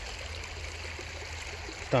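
Shallow creek trickling steadily over stones, with a low rumble underneath.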